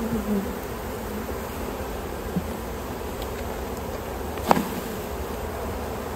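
Steady buzzing of a mass of Caucasian-Carniolan honeybees from an open hive as they are shaken off a brood frame into a tub. A single sharp knock stands out about four and a half seconds in.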